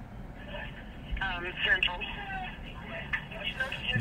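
A woman's voice talking over a phone's speaker, faint and thin with the narrow sound of a phone line.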